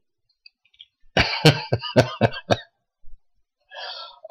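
A man coughing: a quick run of about seven short coughs a second in, followed by a breath near the end.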